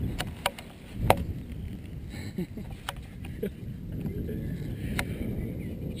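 A golf driver hitting a ball, a sharp strike in the first second followed by a few lighter clicks, with wind on the microphone.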